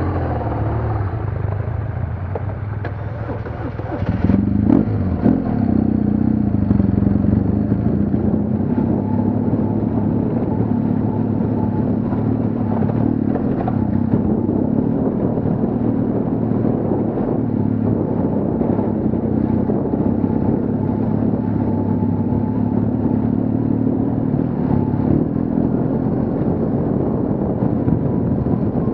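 BMW HP2 Enduro's boxer-twin engine running at low revs, then opening up about four seconds in and pulling steadily under load.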